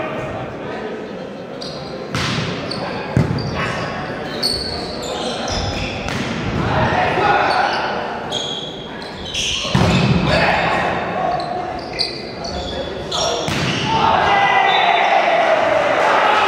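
Volleyball rally in an echoing sports hall: a handful of sharp smacks of the ball being hit, with players and spectators shouting. The voices grow louder near the end.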